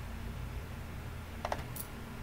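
Computer mouse button clicking: a quick cluster of sharp clicks about one and a half seconds in, then a fainter high click just after, over a steady low electrical hum.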